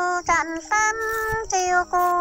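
A woman singing a Dao-language courtship song in a high voice, holding long notes with short breaths between them and brief dips in pitch where the phrases change.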